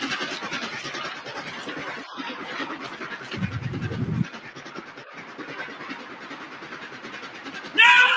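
Steam locomotive running, its exhaust and running gear making a fast, even beat, with a deeper rumble for about a second midway. Near the end a man gives a short, loud yell.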